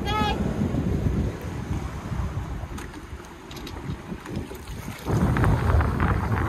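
Strong wind buffeting the microphone on an open boat, an uneven low rumble that grows stronger about five seconds in.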